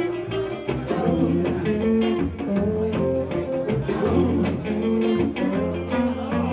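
Acoustic guitar strummed in a steady rhythm together with a fiddle playing held notes, an instrumental stretch of a song.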